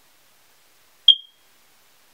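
A single short, high-pitched electronic beep about a second in, fading out quickly.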